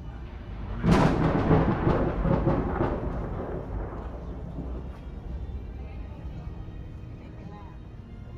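A sudden loud boom about a second in, rumbling and dying away over the next three seconds or so.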